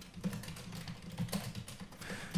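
Typing on a computer keyboard: a quick, irregular run of soft key clicks.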